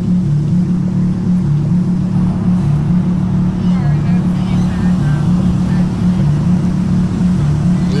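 Steady low drone of a car's engine and road noise, heard from inside the moving car, with faint voices in the middle.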